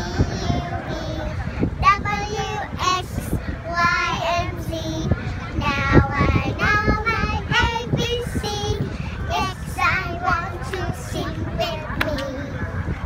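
Young girls singing together, high children's voices with held notes, over wind rumbling on the microphone.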